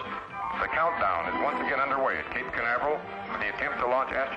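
Music ends right at the start, then a voice speaks in the manner of a radio news report.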